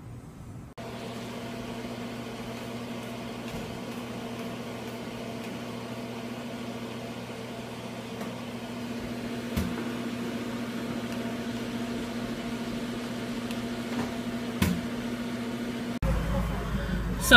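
A steady electrical or machine hum with a low tone, starting abruptly about a second in, with a couple of short sharp clicks later on.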